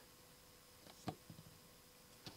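Near silence, with a faint click about a second in and a few softer ticks after it: a folding knife set down on a hard tabletop, rolling over and settling.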